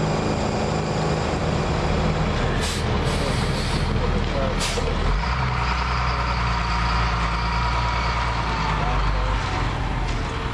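A work truck's engine running steadily under a constant hiss, with two short sharp hisses about two and a half and four and a half seconds in. From about five seconds on a deeper rumble and a steadier whoosh set in as the tack-coat spray wand is worked along the patch seam.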